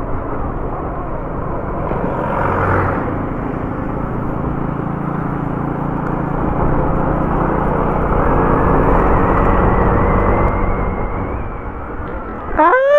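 Honda ADV 150 scooter running at road speed, its single-cylinder engine under a steady rush of wind on the microphone. A faint whine climbs slowly in pitch through the second half as the sound grows a little louder.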